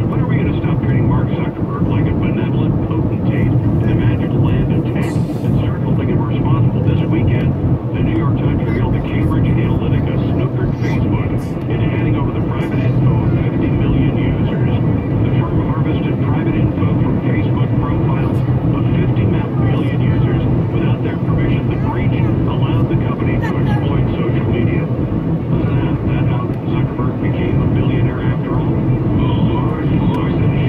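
Steady road and engine rumble of a moving car, heard from inside the cabin, with faint, indistinct talk underneath.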